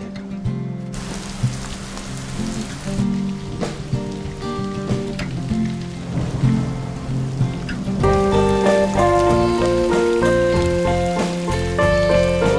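Steady rain falling on water, with background music of sustained notes beneath it. The music grows louder and fuller about two-thirds of the way in.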